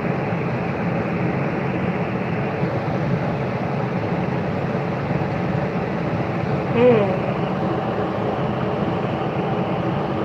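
Steady mechanical hum inside an enclosed Ferris wheel gondola as the wheel turns, with one brief pitched squeak about seven seconds in.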